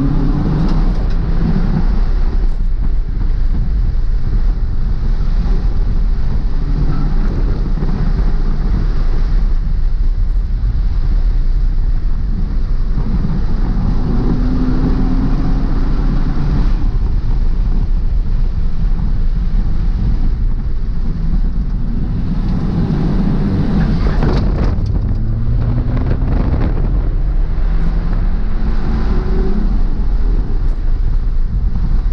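2018 Ford Fiesta ST's turbocharged 1.6-litre four-cylinder engine pulling hard on a race track, heard from inside the stripped cabin along with loud road and wind noise. Its pitch climbs several times as the car accelerates, then drops back between pulls.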